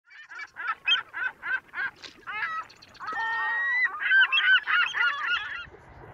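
Birds calling: a run of evenly spaced calls, about four a second, then a louder chorus of many overlapping calls that stops shortly before the end.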